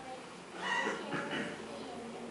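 A young child's brief, high-pitched vocal sound, starting about half a second in and lasting about a second.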